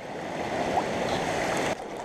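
Shallow stream water rushing steadily over stones and through a gold sluice box, dipping a little near the end.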